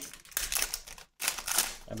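Foil trading-card pack wrapper crinkling and tearing as it is ripped open by hand, in two short crackly bursts.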